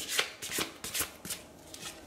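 A deck of Lenormand fortune-telling cards shuffled by hand: a quick run of short papery flicks that thins out in the second half.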